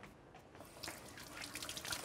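Kitchen tap running faintly into a sink while hands are washed under it.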